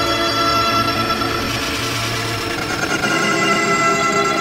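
Heavily effected, layered audio: a loud, dense, steady drone of many overlapping tones, like a sound clip stacked and pitch-shifted into a chord-like wall of sound.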